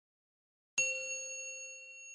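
A single bright, bell-like ding struck once about three-quarters of a second in, its ringing tones slowly fading: a chime sound effect accompanying a channel logo intro.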